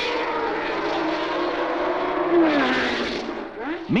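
Formula One race cars running at high revs on the circuit, a steady engine note whose pitch drops as a car goes by about two and a half seconds in.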